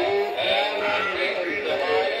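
A recorded song, a man singing over instrumental backing, played by animated singing celebrity dolls.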